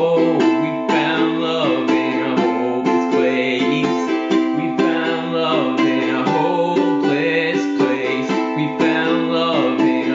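Ukulele strummed in a steady rhythmic pattern through an A minor, F, C, G chord progression, with a man singing the melody along with it.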